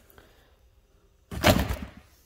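A single thunk about a second and a half in as parts are handled in a cardboard box.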